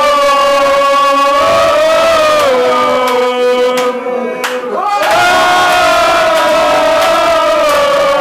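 Voices holding two long, loud shouted notes with a short break just before the halfway point, the pitch bending slightly.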